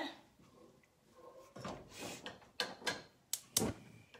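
Wooden spoon stirring thick soup in a pot, with a soft scrape and then a few sharp knocks of the spoon against the pot near the end.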